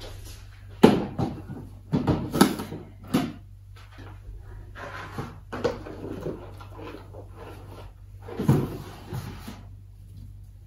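Cardboard boxes being handled and set down on a shelf: a series of knocks and thuds, the sharpest about a second in, a cluster around two to three seconds, and another near the end, with softer rustling and scraping between.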